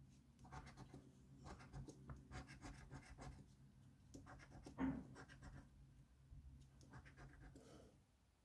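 A coin scratching the scratch-off coating from a scratchcard in many short, faint strokes, with one louder scrape about five seconds in.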